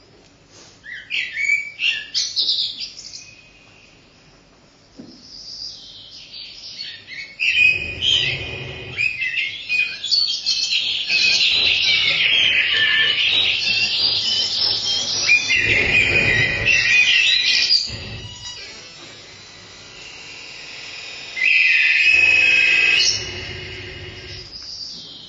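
Live electronic sounds: high chirping, twittering glides that come in bursts, thicken into a dense chattering mass in the middle with low rumbles under it, and end with a loud steady buzzing tone for a second or two near the end.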